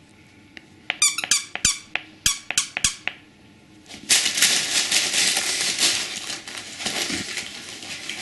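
A squeaky plush dog toy squeaks in a quick run of about eight sharp squeaks about a second in. From about four seconds in comes loud, continuous crinkling and tearing of wrapping paper as a small dog runs and paws through it.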